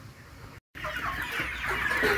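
A flock of brown laying hens clucking together while feeding. The many overlapping calls start suddenly about two-thirds of a second in, after a brief quiet.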